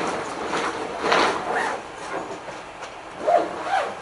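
Bags and their contents being handled and rummaged through: fabric rustling in a series of short noisy strokes.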